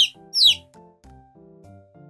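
Two high chick peeps, each sliding down in pitch, about half a second apart: the 'piu-piu' sound effect of a chick. Instrumental children's-song backing music follows, quieter.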